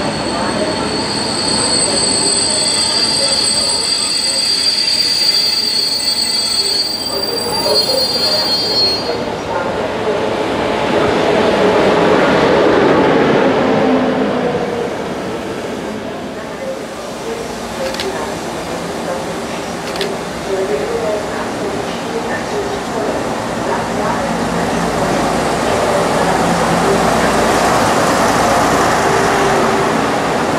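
Diesel multiple unit running along a station platform, with a high, steady wheel squeal for the first nine seconds or so. Then comes the broad rumble of the train moving, with two sharp clicks near the middle.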